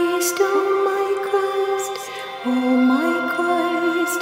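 Slow devotional chant: a voice holds long notes, sliding up into each new note, over a steady drone.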